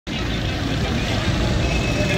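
Road traffic: a small hatchback car driving past close by, with motorcycles running behind it, a steady low rumble of engines and tyres.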